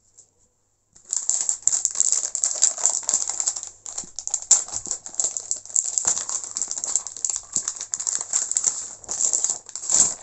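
Plastic pack of laminating pouches crinkling and rattling as it is handled. It starts about a second in and goes on as a dense run of irregular crackles.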